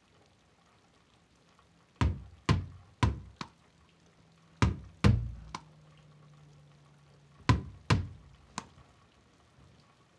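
A ball bounced repeatedly off a wall: sharp knocks in three quick runs of three or four hits about half a second apart, each run dying away, the first starting about two seconds in.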